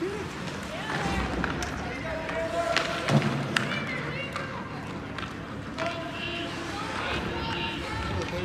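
Ice hockey in play in an echoing rink: scattered sharp clacks of sticks and puck on the ice and boards, over distant shouts and voices from players and spectators.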